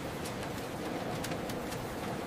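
Steady hum and whir of printing-press ink rollers running, with a few faint light ticks.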